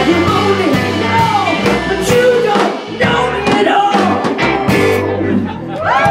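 A live rock band playing: a woman singing over drums, bass guitar and keyboard, with steady drum hits.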